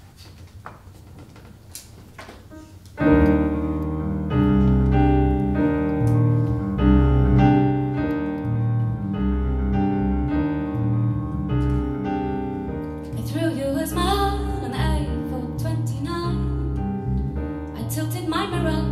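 Faint room noise with a few clicks, then about three seconds in a stage keyboard set to a piano sound starts the song's intro with held chords over low bass notes. A voice comes in singing about thirteen seconds in.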